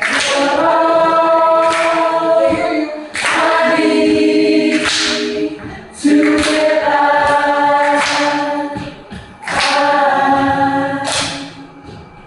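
Unaccompanied singing into a microphone: long held, wordless notes in phrases of two to three seconds, each phrase opening with a short breathy burst.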